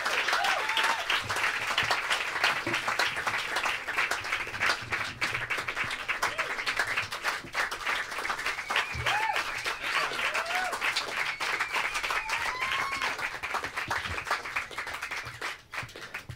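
Audience applauding with a few voices calling out, dying down near the end.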